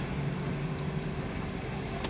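Steady low engine hum and road noise heard from inside a car's cabin as it creeps forward slowly.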